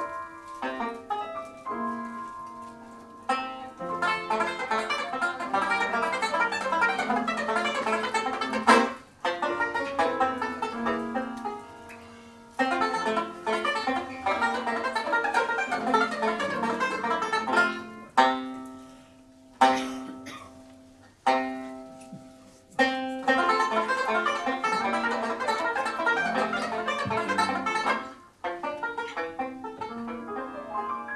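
Solo banjo playing a novelty solo in fast plucked runs and chords. About two-thirds through, the run breaks into four single struck notes, each left to ring and die away, spaced about a second and a half apart, before the fast playing resumes.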